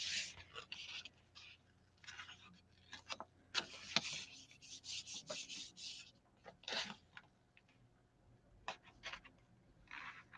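Faint, on-and-off papery rubbing as a hand presses and smooths a sheet of paper onto a gel printing plate to pull a print, with a couple of small sharp taps about four seconds in.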